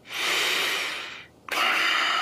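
Two heavy breaths with no voice in them: a long breath out that swells and fades away, then a second breath that starts abruptly about one and a half seconds in.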